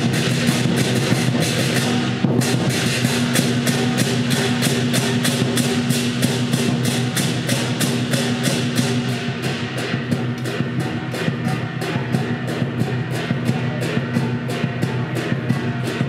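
Traditional lion dance percussion: a large Chinese lion drum beaten with cymbals and gong in a fast, even rhythm of about four strokes a second, loud over a steady low ring.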